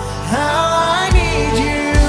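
Live worship band playing a song: a sung melody with held notes over electric and acoustic guitars, violin, keyboard and drums, with a deep drum hit just past one second and another at the end.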